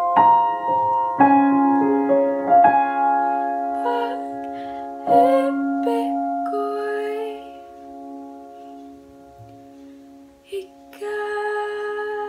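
Acoustic piano playing slow, held chords. One chord rings on and fades away, then a new chord is struck near the end.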